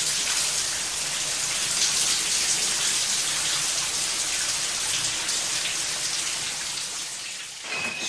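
Shower running: a steady hiss of water spray, fading out near the end.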